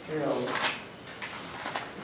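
A man's voice saying a word, then a pause broken by a single short knock a little before the end.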